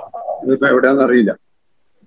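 A man's voice speaking briefly in a small room.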